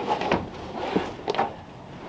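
Textured rubber floor mat being slid and pressed down by hand onto a car floor: scuffing with a few short knocks.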